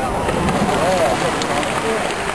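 Spectators' voices murmuring over a steady background hum, with a few faint sharp taps in the second half.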